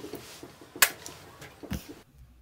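Quiet room tone with one sharp click about a second in and a softer, lower knock near the end.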